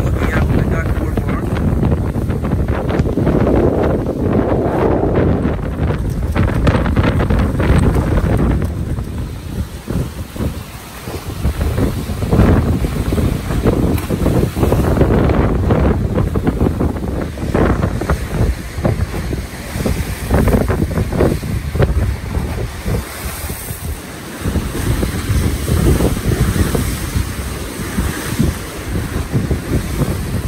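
Strong gusty wind buffeting the microphone over wind-driven, choppy water splashing against a bulkhead and boardwalk. This is storm wind piling sound water up onto the shore. The wind eases briefly about ten seconds in and again near the twenty-four second mark.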